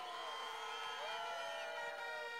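Large rally crowd cheering and whooping, with several steady held tones over the even crowd noise.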